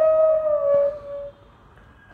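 Flute playing raga Jhinjhoti: one held note that bends slightly down and fades out about a second and a half in, followed by a short pause.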